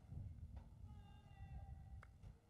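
Near silence: a low, steady outdoor rumble with a faint, high pitched tone held for about a second near the middle.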